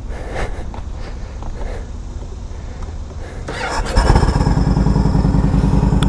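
2012 Yamaha Road Star Silverado's 1,700 cc V-twin running low and lumpy, then opened up about three and a half seconds in as the bike pulls away, becoming much louder with a strong fast pulsing beat. The sound is exhaust with air rush from an aftermarket intake on top.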